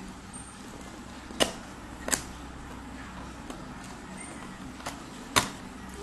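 Paperboard product box handled and opened by hand: a few sharp clicks and snaps of card as the flap is worked loose, three of them loud, over a steady low background hum.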